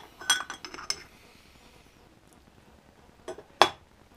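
Metal clinks and taps as the end cover is taken off a Rolls-Royce Merlin aero-engine hand-starter gearbox: a quick cluster of small clinks in the first second, then quiet, then two more clinks near the end, the last one the loudest.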